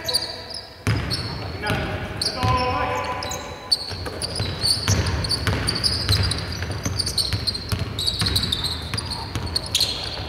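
Basketball game on a hardwood court: the ball bouncing in irregular dribbles and passes, with short sharp knocks and voices calling out, echoing in a large hall.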